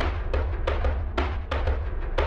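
A cinematic horror percussion pattern from the AURORROR sample instrument: an uneven run of sharp drum hits, about six a second, over a deep, steady low rumble.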